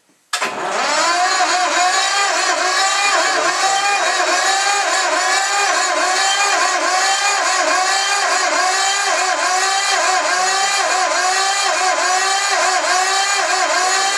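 1950s Lister diesel engine being cranked over by its starter: a loud, steady whine that dips in pitch about twice a second as each compression stroke loads it. It starts suddenly and stops without the engine catching, typical of a cold diesel, here running on sunflower oil, that needs heat to start.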